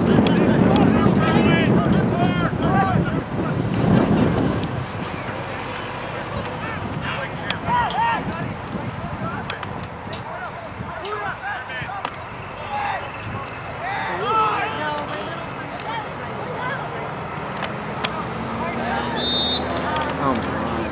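Wind buffeting the microphone for the first four seconds or so, then scattered shouts and calls from players and spectators across an open playing field.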